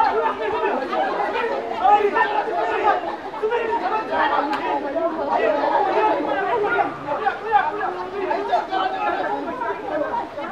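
A crowd of people talking at once, many overlapping voices with no single speaker standing out.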